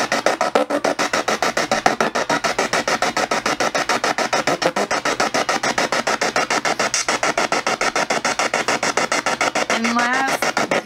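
Spirit box sweeping through radio frequencies: a steady, rapid chopping of static and clipped radio fragments, about ten a second. The operator reads words into the fragments as spirit voices, here 'me too'.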